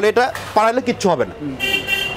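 A man talking, and near the end a vehicle horn sounds with a steady high tone for about half a second.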